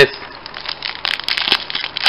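Foil booster pack wrapper crinkling and crackling as it is torn open by hand, a run of irregular crackles that grows louder about halfway through.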